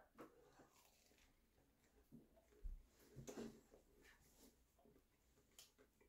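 Near silence with a few faint, soft mouth sounds of a man chewing a bite of a biscuit breakfast sandwich, clustered a little before the middle.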